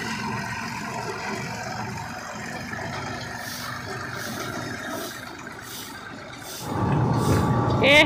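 Small farm tractor engine running steadily as the tractor drags its rear blade through seed spread over the yard. About seven seconds in, this gives way to a louder, low rumble of oil-mill machinery running.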